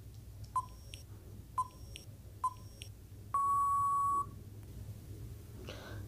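Quiz countdown-timer sound effect: three short ticking beeps about a second apart, then one long steady beep lasting about a second that signals time is up, over a faint low hum.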